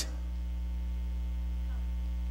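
Steady electrical mains hum in the microphone's sound system: a low, unchanging hum with a ladder of overtones.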